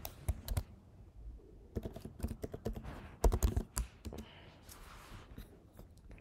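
Typing on a computer keyboard: a run of quick, irregular keystroke clicks as a wallet password is entered, loudest in a cluster a little past three seconds in, then thinning out.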